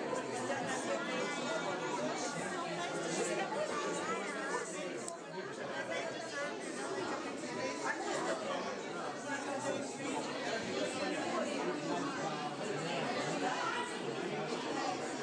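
Close conversation among several people, voices overlapping, over a background of crowd chatter.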